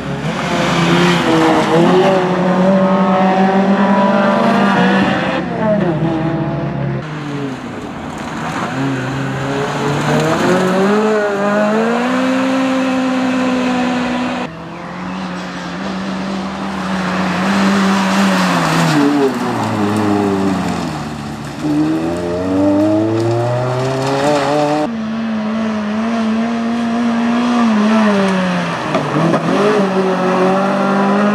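Toyota Celica's four-cylinder engine being driven hard, revving up and falling away over and over as it accelerates out of and brakes into corners. The sound breaks off abruptly a few times as the shot changes.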